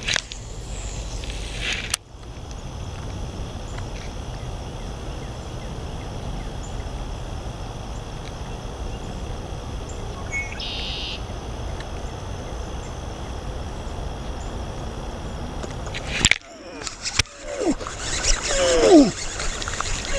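Steady low outdoor noise, with a sharp click at the start and another about two seconds in. Near the end comes a cluster of knocks and short vocal sounds that glide up and down in pitch.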